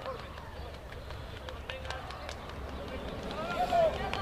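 Players' shouts and calls across a rugby pitch during a scrum, short scattered voices with one louder, drawn-out shout near the end.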